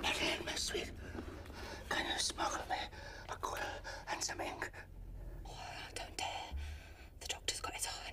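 Hushed whispered conversation between a man and a woman.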